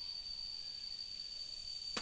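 Quiet, steady high-pitched insect chirring, one unbroken tone with a fainter higher band above it, with a sharp click near the end.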